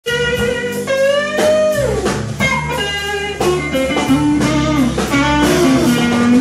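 Electric blues guitar playing a single-note lead over bass and drums, with a note bent up and let back down about a second and a half in.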